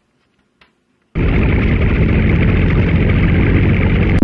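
An explosion-like sound effect: after a second of near silence, a loud rush of noise starts abruptly and holds steady instead of dying away.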